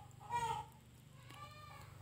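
Faint farm animal calls: a short pitched call just after the start and a fainter one about a second and a half in, over a steady low hum.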